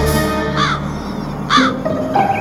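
Advert soundtrack on a hall's speakers: a music bed that stops about halfway, with two crow caws about a second apart.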